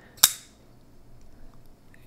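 One sharp, snappy click from the blade of a Civivi Mini Praxis liner-lock folding knife being flicked, about a quarter of a second in.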